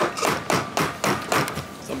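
A quick run of loud knocks or thumps, about four or five a second, that a speaker calls noise.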